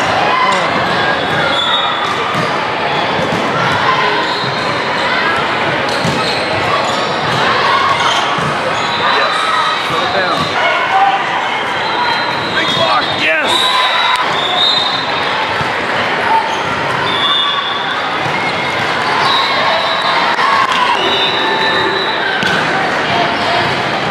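Busy volleyball hall: sneakers squeaking on the hardwood court, the ball being struck with sharp smacks, and a constant din of players' and spectators' voices echoing around a large room.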